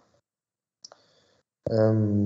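A single short, faint click about a second in, amid near silence, followed near the end by a man's voice resuming.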